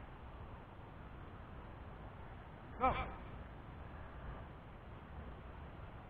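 Mostly faint, steady low background noise, with a man's voice saying "Go" once, about three seconds in.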